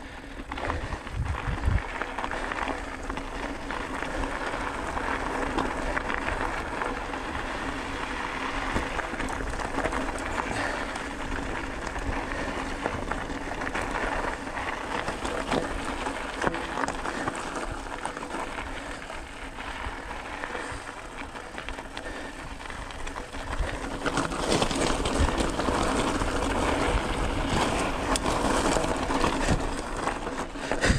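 Mountain bike rolling over a gravel desert trail: tyres crunching on loose stones and the bike rattling over bumps, with many small knocks. It gets louder and rougher about three-quarters of the way through as the trail turns rocky.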